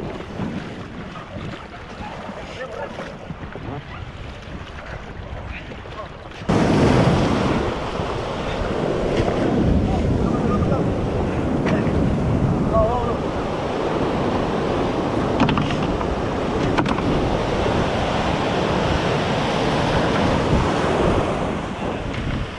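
Breaking surf and rushing wave wash, with wind buffeting the microphone. About six and a half seconds in the noise jumps suddenly louder and stays loud.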